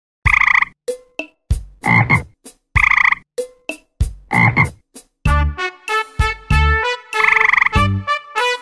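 Frog croaking: four loud croaks about a second and a quarter apart. About five seconds in, bouncy music of short pitched notes begins, with another croak over it near the end.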